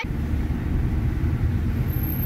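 Steady engine and road rumble inside a moving taxi's cabin, heard from the back seat.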